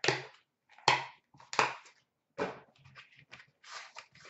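Cardboard trading-card boxes and packaging handled by hand, making about five short scraping and rustling sounds roughly a second apart as a box is lifted and its lid is worked off.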